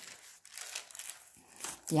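A thin Bible-paper page being turned by hand, with a soft, crinkly paper rustle.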